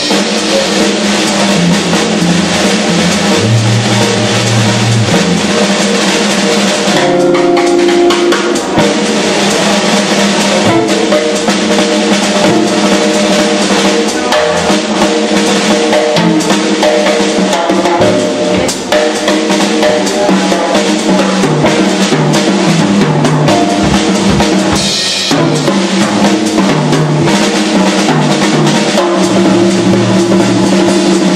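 Live jazz trio playing: electric archtop guitar, upright double bass and a Yamaha drum kit, with the drums to the fore and the bass stepping through low notes under busy snare and cymbal hits.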